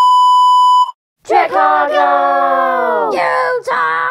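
Colour-bar test tone: a loud, steady 1 kHz beep that cuts off abruptly about a second in. After a brief silence, a voice holds a long note that falls in pitch, and more voice follows.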